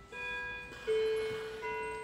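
Mantel clock chiming: a slow run of single ringing notes, each held until the next sounds.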